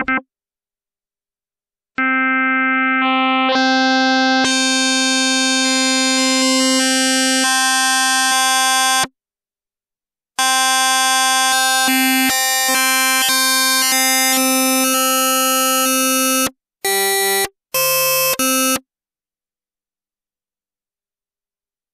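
Yamaha Reface DX FM synthesizer holding a single note, its tone growing brighter and more metallic in steps as the modulator levels are turned up. After a short gap a second long note is held, followed by two short notes.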